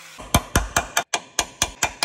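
Hammer striking the steel sill of a Mercedes W124 in a quick run of about eight sharp blows, with a short break a little past the middle. The blows knock back into line metal that was pushed out of shape when the old rusted jack-point panel was pulled off, ready for the new panel.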